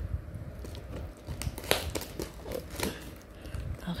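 Brown paper and plastic parcel wrapping crinkling and crackling in irregular short bursts as it is cut with scissors and pulled open by hand.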